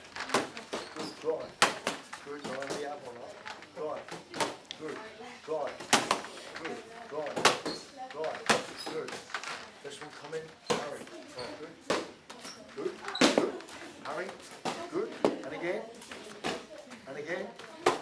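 Boxing gloves striking leather focus mitts: sharp slaps landing irregularly, about one every second or two, with voices talking behind them.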